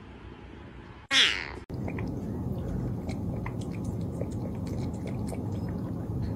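A cat gives one short, loud meow about a second in. Then a ginger tabby cat laps water from a drinking glass: small, irregular wet clicks over a steady low hum.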